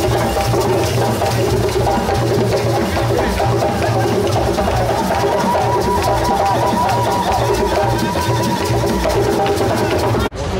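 Loud live African hand drumming in a steady rhythm, with a melody running over it.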